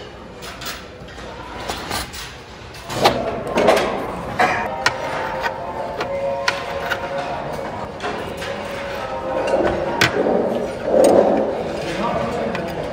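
Sharp clacks and knocks of metal utensils against dishes and a plastic meal tray, many in quick succession after the first few seconds, over background music and a faint murmur of voices.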